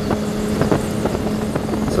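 Kawasaki ZX-6R's inline-four engine running at a steady highway cruise, a constant hum under wind noise.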